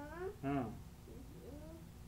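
A small child's short, high-pitched vocal sounds, gliding up and down in pitch, with the loudest cries in the first second.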